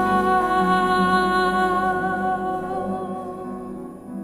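Female jazz vocalist humming a wordless, held line over the band's sustained chord, the whole sound fading away steadily toward the end.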